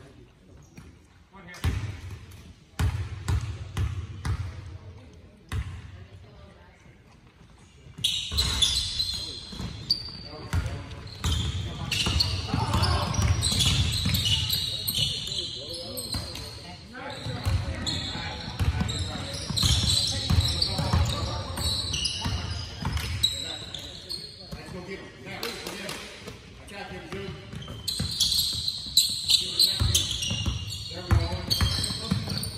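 A basketball bouncing on a hardwood gym floor, a few separate bounces in the first seconds, then from about eight seconds in, live play: ball bounces, sneakers squeaking on the court and indistinct shouting voices, all echoing in the large gym.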